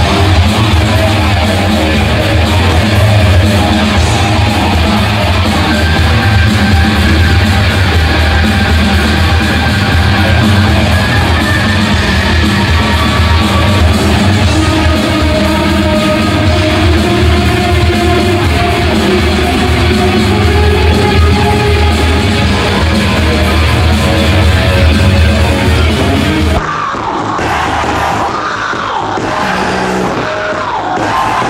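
Loud hard rock music with electric guitar to the fore and a shouted singing voice. About 26 seconds in it cuts to a duller, thinner live recording.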